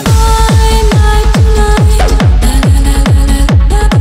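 Hard techno track: a fast kick drum comes back in right at the start after a short drop-out of the bass, driving a steady beat under held synth notes.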